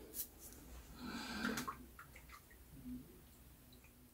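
Faint scratching of a vintage Gillette open-comb safety razor with a Lord blade drawn through lathered stubble, loudest about a second in.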